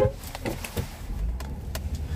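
Low steady rumble of a car's engine and road noise heard from inside the cabin as the car pulls off, with a few faint clicks.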